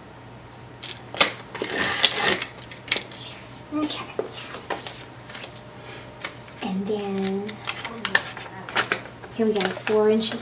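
Paper cards being handled on a paper trimmer and laid onto a binder's pages: rustling with scattered sharp taps and clicks, the loudest about a second in and around two seconds.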